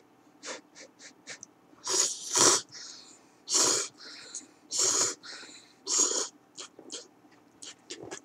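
A person slurping instant cup curry ramen noodles off chopsticks: about five loud, short slurps, with small mouth clicks and smacks between them.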